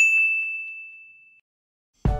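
A single bright ding sound effect, struck once and ringing on one high pitch as it fades away over about a second and a half.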